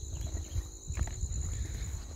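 Footsteps through long grass with irregular low thumps and rumble, a few faint ticks among them, over a steady high chirring of insects.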